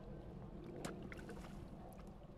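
Faint outdoor water-side noise: light rain on the lake surface with a low wind rumble, and one sharp tick about a second in.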